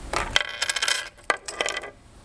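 Small metal objects jingling and clinking, with quick clinks and a ringing tone, a short pause midway and one sharp clink just after it.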